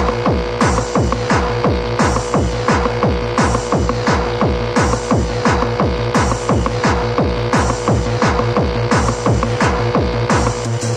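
Early-1990s rave techno from a DJ mix: a fast, steady kick-drum beat, each hit sliding down in pitch, under a held high tone and hi-hats.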